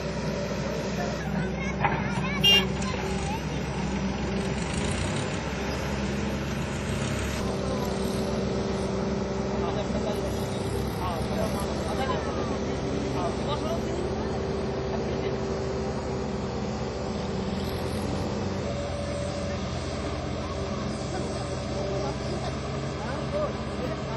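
A steady engine hum with faint voices in the background, and one short sharp sound about two and a half seconds in.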